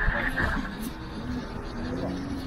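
A person's voice making drawn-out, wavering sounds over steady street and riding noise, with a high whine that fades out about half a second in.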